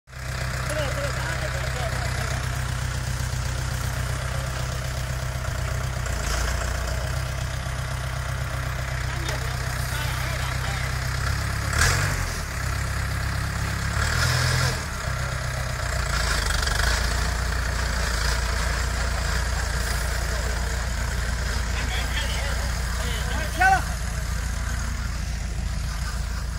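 Engine of a self-propelled high-clearance boom sprayer running steadily as the machine drives along, its note shifting several times. Two brief, louder knocks come about twelve seconds in and near the end.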